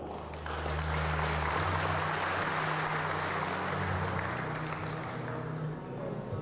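Audience applauding, starting about half a second in and fading near the end, with low bass notes of background music underneath.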